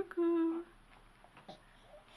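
A voice humming one steady note for about half a second near the start, followed by a faint tap.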